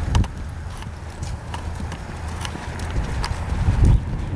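Hoofbeats of a Quarter Horse mare loping on arena sand: dull thuds with sharp clicks at an uneven rhythm, the heaviest thuds just after the start and near the end, over a low rumble.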